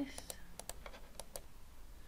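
A quick, irregular run of about six small, sharp clicks from a computer's mouse and keys, faint against a low room hum, fading out in the second half.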